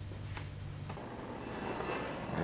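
Acetylene torch with a small tip burning with a steady hiss that comes in about halfway through, after a faint click, over a low hum, as the flame is brought to a bent steel linear rod to heat its high spot.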